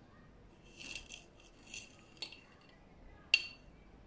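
Wire whisk lightly clinking against a metal saucepan of milk mixture: a few soft touches, then one sharp clink a little over three seconds in.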